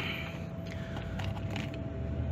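Small plastic parts clicking and rattling as a hand rummages in a plastic compartment organizer of wire nuts and butt connectors, over a steady low hum with a faint constant tone.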